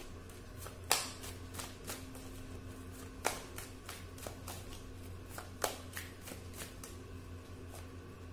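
Tarot deck being shuffled by hand: a run of irregular card slaps and flicks, three of them louder than the rest, over a low steady hum.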